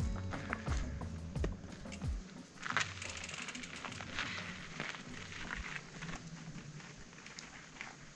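Mountain bike riding up a rocky dirt trail: tyres crunching over dirt and stones, with scattered clicks and knocks from the bike. The rumble is heavier in the first couple of seconds, then it runs lighter.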